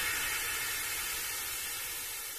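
Electronic white-noise wash from a house track's outro: a steady hiss with no beat or tones, slowly fading away.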